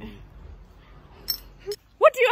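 A single sharp metallic clink a little past the middle, a steel knife knocking against metal, with a brief high ring.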